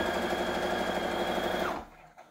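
Brother PS300T computerized sewing machine running a straight stitch at a steady speed, then stopping short about three-quarters of the way through with its needle left down in the fabric.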